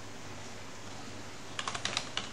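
Computer keyboard being typed on: a quick run of about five keystrokes starting about one and a half seconds in, over faint steady background noise.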